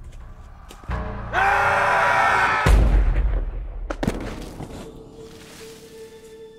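Horror film score and sound design: a low hit, then a loud, dense shrieking swell that cuts into a heavy boom about two and a half seconds in, with another sharp hit about a second later before the sound fades to a thin sustained tone.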